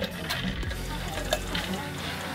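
A drink poured from a plastic pitcher into an insulated bottle over ice, with a couple of short ice clinks.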